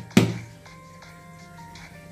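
A hand tapping once on the base of an upturned aluminium cake tin, a sharp knock just after the start, to loosen the steamed dhokla onto the plate. Soft background music of thin sustained notes follows.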